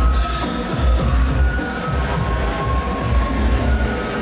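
Electronic dance music playing loud over a nightclub sound system, with heavy bass.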